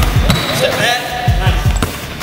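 Basketballs being dribbled hard and fast on a hardwood gym floor. There are quick runs of bounces, with a short break near the middle.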